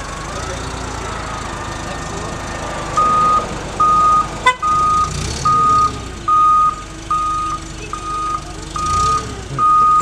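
Forklift engine running, then about three seconds in its reversing alarm starts: a steady, evenly spaced single-pitch beep, about one and a half beeps a second, as the forklift backs away with the load.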